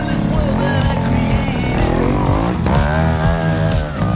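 Background music over a Beta trials motorcycle engine revving, its pitch rising and falling.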